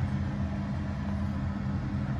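A steady low machine hum, even throughout.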